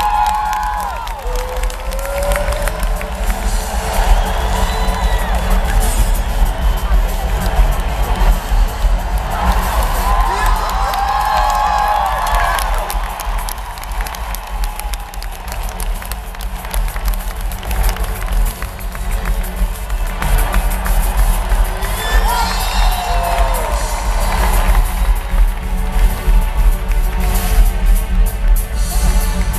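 A live rock-pop concert heard from within an arena crowd: amplified band music with a steady heavy bass under a crowd cheering and shouting. Massed voices swell in whoops and shouts several times, most strongly near the start, in the middle and toward the end.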